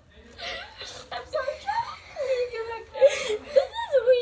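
Young people laughing and making wordless vocal sounds, with a long wavering voiced note in the second half.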